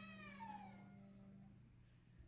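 Faint, high-pitched whining vocal sound, like a small child's, that glides down in pitch and fades within about a second, over a steady low tone that stops about a second and a half in.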